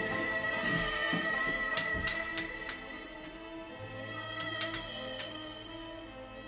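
Background music of long sustained tones, with a few sharp clicks in two clusters, about two seconds in and again about four and a half seconds in, which fit clay poker chips being handled on the table.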